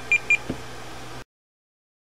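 YagTracker APRS terminal giving two short, high beeps as its rotary encoder knob is turned, followed by a faint click. The sound then cuts off to dead silence a little over a second in.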